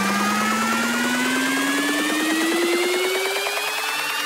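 Synthesizer riser in an electronic dance track's build-up: one buzzing tone gliding steadily upward in pitch over a fast pulsing texture.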